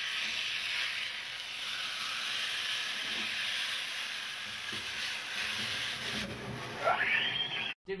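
Meat sizzling steadily in a hot frying pan over a gas burner. Near the end a pitched sound slides upward just before the sound cuts off suddenly.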